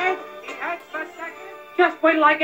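A cartoon soundtrack with an animated character's short vocal exclamations and grunts over background music, and a louder shouting voice breaking in near the end.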